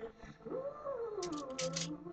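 A woman's singing voice with music, sliding up onto a held note and falling back down, then several short hissing consonants near the end.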